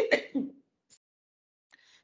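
A woman clearing her throat in a few short, rough bursts that end about half a second in. The sound comes from a cough that is troubling her.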